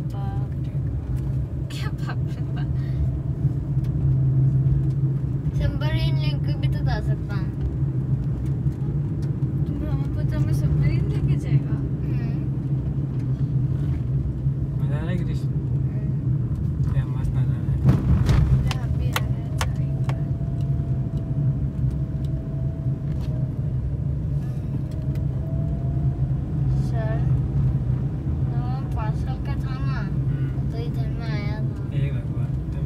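Steady engine and road noise inside a moving car's cabin, with voices in the car now and then.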